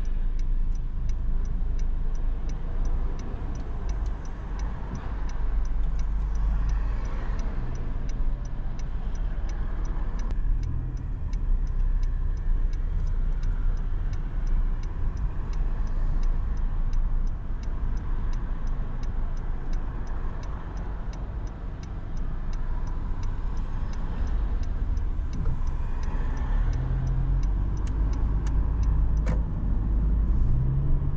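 Car driving in city traffic, heard from inside: a steady low road and engine rumble. A light, even ticking runs over it at about two ticks a second.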